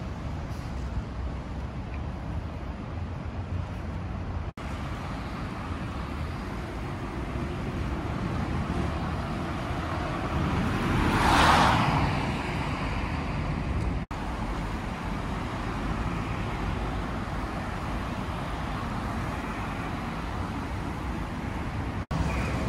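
Steady city-street traffic noise, with one vehicle passing close and loudest about eleven seconds in before fading away.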